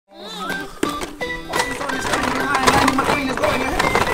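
Music mixed with voice-like sounds, with several sharp clicks in the first two seconds.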